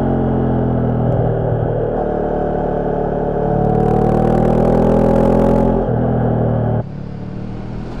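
Honda CB500X parallel-twin engine with a Staintune exhaust, pulling steadily uphill under throttle. A rush of wind hiss rises over it for about two seconds in the middle, and the engine sound drops off about a second before the end.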